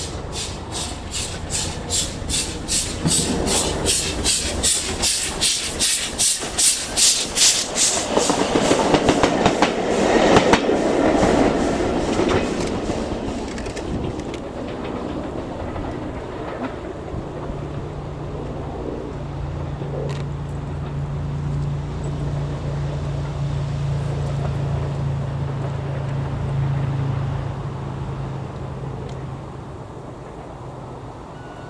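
LMS Royal Scot class steam locomotive 46115 Scots Guardsman, a three-cylinder 4-6-0, passing at speed with its support coach. A rapid, even beat of exhaust chuffs, about four a second, grows louder to a peak about ten seconds in as it goes by. It then fades into a steady low rumble of wheels on rail as the train draws away.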